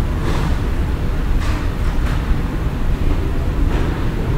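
Steady low rumble with a few faint, brief noises over it.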